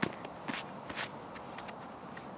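A few irregular footsteps crunching in snow, short sharp strokes about half a second apart.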